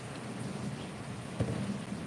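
Steady background noise, an even hiss with a low hum underneath, and one soft knock about one and a half seconds in.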